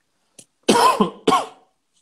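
A man coughing twice into his fist: two short, loud coughs about half a second apart.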